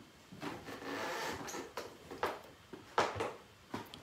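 Off-camera handling noise in a small room: a few scattered knocks and clicks with a stretch of soft rustling, as objects are picked up and moved about.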